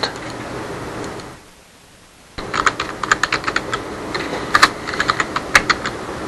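Typing on a computer keyboard: a quick, irregular run of keystrokes that starts about two and a half seconds in, as a web search for a PHP function name is typed. Before it there is only a steady hiss of room noise.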